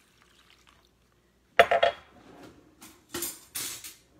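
Kitchen containers and utensils handled on a countertop: a sharp clank about a second and a half in, a few lighter knocks, then a brief rushing noise near the end.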